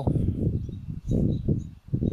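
Low, uneven rumbling noise on the camera's microphone, dropping out briefly near the end.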